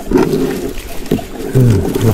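Loud, rough low rumbling noise with scattered crackles and a sharp knock about a second in, then a man's low voice starting near the end.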